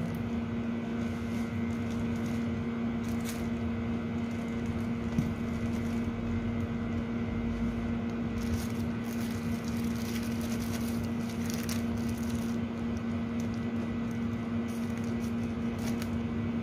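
A steady low-pitched electrical hum from a running appliance fills the room. Over it come a few faint clicks and crinkles as a plastic bag of blended jute mallow is handled and cut open with scissors.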